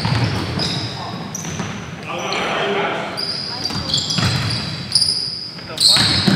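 Pickup-style basketball game in a gym: sneakers squeaking in short high chirps on the court floor, the ball bouncing, and players' voices echoing in the hall.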